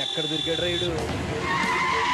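Film soundtrack: a steady high tone for about the first second, then background music with a stepped melody of held notes. A wavering high tone enters about a second and a half in.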